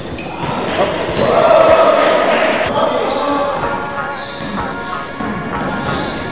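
Court sounds of a basketball game in a gym: the ball bouncing on the wooden floor among players' calls and shouts, all echoing in a large hall.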